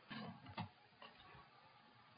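Near silence, with a few faint clicks in the first second.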